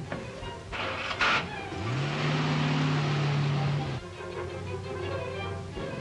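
A car door slams about a second in, then the car's engine revs up as it pulls away, its pitch rising and holding with road noise, and settles into a steady run. Background film music plays underneath.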